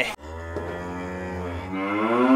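A cow mooing: one long, drawn-out moo that starts a moment in and grows louder near the end.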